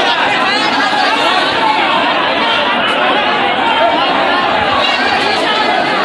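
A large crowd of people talking over one another, a steady loud hubbub of many voices with no single speaker standing out.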